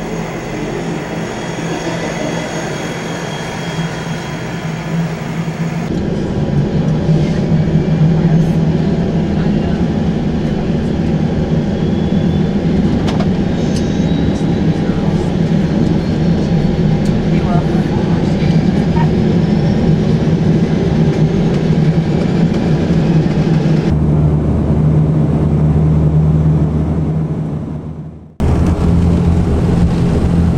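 Twin-turboprop airliner, an Embraer EMB-120 Brasilia type, running its engines: a steady propeller drone under a high turbine whine. It is heard first while the aircraft taxis and then from inside the cabin beside a spinning propeller, where it is louder and the whine climbs slowly in pitch. Near the end the sound drops out for a moment and comes back.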